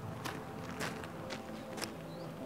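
Footsteps on gravel, about two steps a second.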